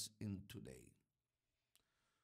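A brief, quiet trail of spoken voice, then near silence broken by one faint click near the end.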